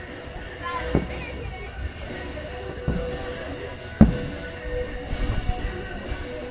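Aerial firework shells bursting, with a boom about a second in, another near three seconds and a sharp one at four seconds, then a quick run of smaller pops and crackles.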